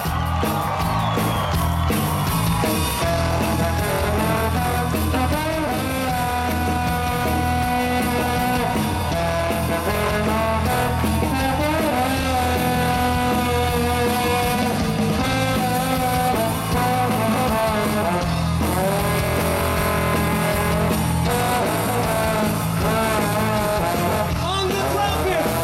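Live ska-rock band playing, with a trombone solo on top: long held notes and slides over bass and drums.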